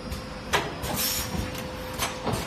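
Automatic plastic ampoule forming, filling and sealing machine running with a steady hum, its stations cycling with a sharp clack about half a second in and a short hiss about a second in, typical of the pneumatic cylinders moving and venting air.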